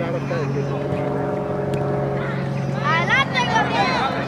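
A steady low machine hum, like a motor or engine running, continues throughout. Children's high-pitched voices call out across the field near the end.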